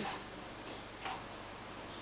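Quiet room tone: a steady faint hiss with a single faint click about a second in.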